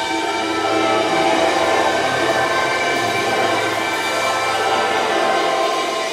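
A rock band playing live, with electric guitars, bass and keyboards holding sustained, layered notes at a steady loudness.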